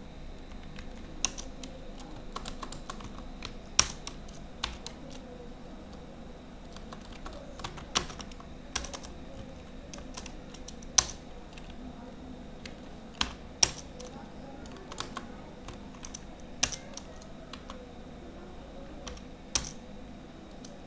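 Computer keyboard typing: irregular, scattered keystrokes with pauses between short runs, over a steady faint background hum.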